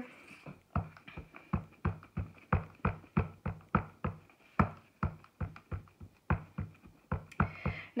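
A red rubber stamp on an acrylic clear block tapped again and again onto a black ink pad to ink it up: a quick, uneven run of light taps, about three or four a second.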